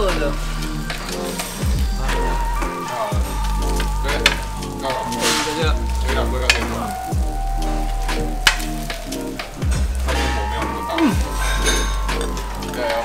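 Meat sizzling on a Korean barbecue tabletop grill, with background music carrying a deep pulsing bass and a sliding melody. There are a few light clicks of utensils.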